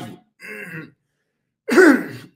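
A man clearing his throat into his fist: one loud, short burst near the end, after a brief soft vocal sound about half a second in.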